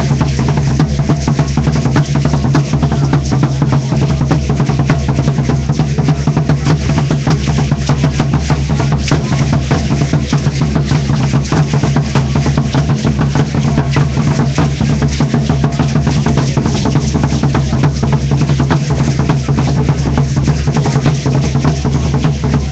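Loud, steady drumming with dense, rapid rattling and clicking, the percussion that accompanies dancers in regalia.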